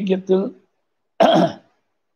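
A man's recitation breaks off about half a second in, and a little later he gives a single short cough.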